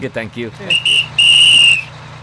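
Bus conductor's whistle blown twice, a short blast and then a longer, louder one, over a low steady hum.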